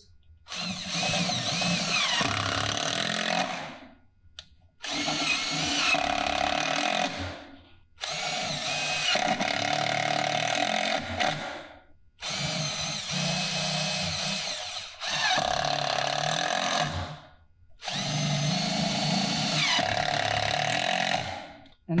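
Cordless 18-volt driver sinking 1-5/8-inch screws through a 3/4-inch plywood cleat into a 2x4 leg, about six screws one after another, each run lasting two to three seconds with short pauses between.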